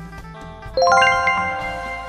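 A quick run of bright bell-like chime notes strikes about three-quarters of a second in and rings out, slowly fading, over steady background music.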